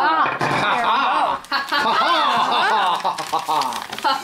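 Several voices talking over one another, filling the whole stretch without a pause.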